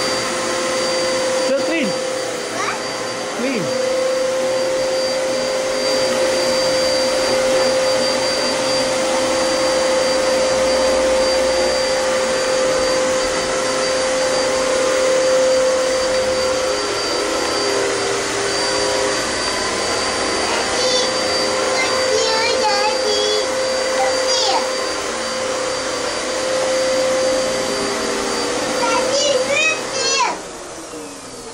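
Upright vacuum cleaner running steadily, its motor giving a constant hum with a whine over the rushing air. A child's voice calls out briefly a few times in the last third.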